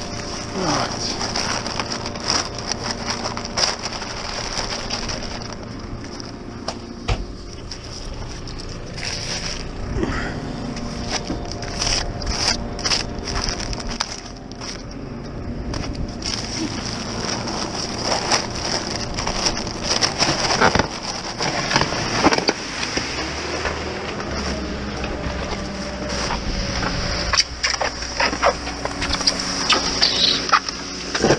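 Paper cement sacks being handled, torn open and emptied into a loader's mixer bucket, with irregular crackling and rustling. A JCB telehandler's engine runs steadily underneath.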